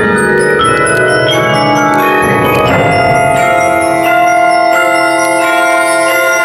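Percussion ensemble of marimbas, vibraphones and bell-like mallet instruments playing a run of struck, ringing notes that settles into long held chords about halfway through.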